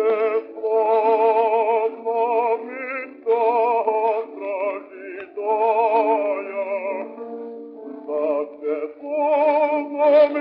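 Bass voice singing a Russian romance in long held phrases with a wide vibrato, from a 1909 acoustic recording: thin and narrow-sounding, with no deep bass.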